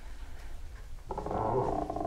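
A low rumble, then a loud, grainy growl-like sound effect that starts suddenly about a second in and keeps going.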